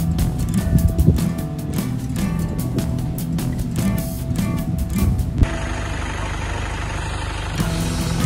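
Background music with a steady beat, over the engines of motorcycles and cars passing on the road. About five seconds in the beat stops, leaving a steady low engine hum.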